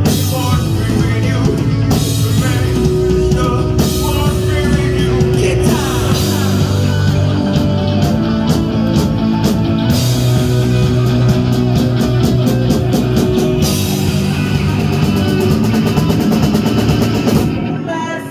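Live rock band playing loudly: two electric guitars, bass guitar and drum kit in a passage without sung words. The band eases off just before the end.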